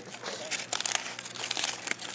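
Aluminium foil crinkling in quick, irregular crackles as it is pulled open around cooked chicken pieces.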